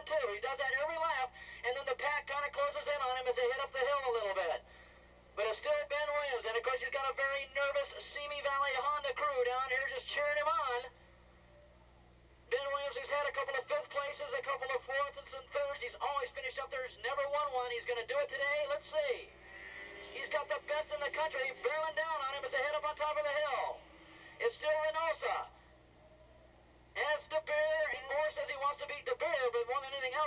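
Race commentary: continuous talking with thin, narrow, telephone-like sound quality, broken by a few short pauses.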